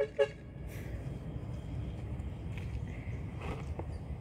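Steady low rumble of outdoor background noise with no distinct event in it.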